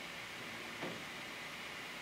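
Faint steady hiss of room tone, with a brief soft sound a little under a second in.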